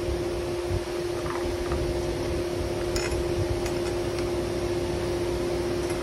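A steady mechanical hum, fan-like, with one light click about halfway through as the steel vise parts are handled.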